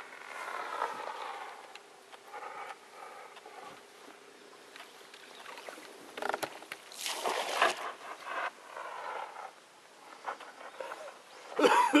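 Water lapping and splashing along the side of a wooden gorge boat, with a louder splash about seven seconds in. Short pitched calls come and go over it.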